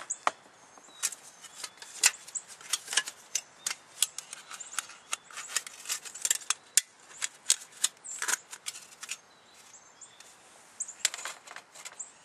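Irregular light clicks and clinks of small metal cook-kit pieces being handled, fitted together and set down on a table, with a brief lull about nine seconds in.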